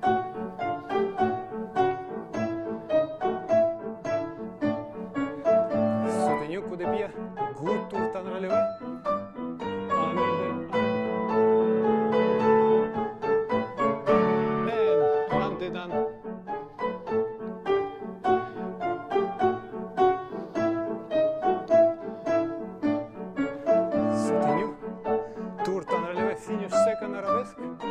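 Piano accompaniment for a ballet barre exercise: a classical-style piece in a steady metre of regularly struck notes and chords, with longer held chords about halfway through.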